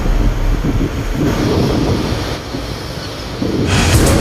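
Wind buffeting the microphone on a ship's open deck in a rough sea: an irregular low rumble that eases a little past the middle.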